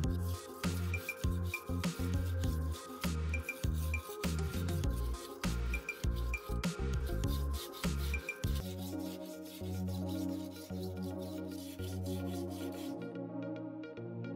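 Kitchen knife blade drawn in repeated strokes across a wetted sharpening stone, a rasping rub, under background music with a beat.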